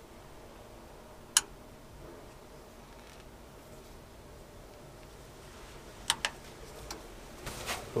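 Sharp clicks from the controls of an old Vaillant combi gas boiler as the pilot is tried, over a quiet room: one loud click about a second and a half in, then a quick pair about six seconds in and a fainter one after. The pilot does not light, because the gas supply is off.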